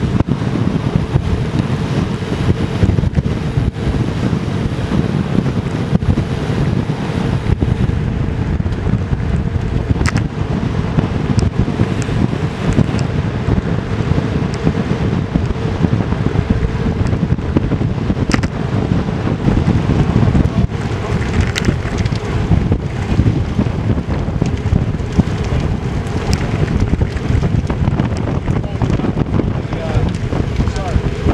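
Steady, loud wind noise buffeting the camera microphone on a road bike ridden at around 30 km/h.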